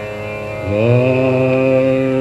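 Tanpura drone, with a male Hindustani classical voice entering about two-thirds of a second in, sliding up into a long held note.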